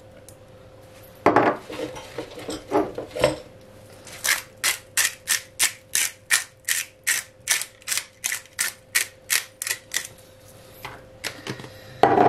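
Hand-turned salt mill grinding sea salt: a regular run of about seventeen short grinding strokes, roughly three a second, lasting about six seconds from around four seconds in. Before it come a few brief handling knocks.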